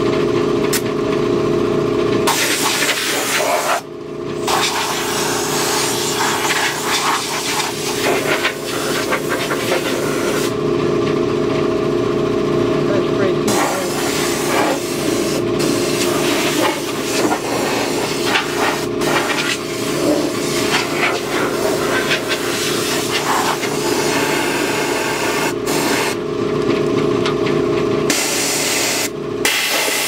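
Handheld air-fed spot sand blaster spraying abrasive onto a steel truck frame: a loud hiss that starts a couple of seconds in and stops and restarts twice in short pauses. A steady motor hum runs underneath.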